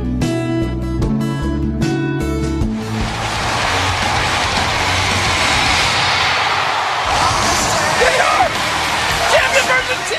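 Plucked guitar music for about three seconds, then it gives way to a loud, dense roar of noise with voices breaking through near the end, like an arena crowd over entrance music.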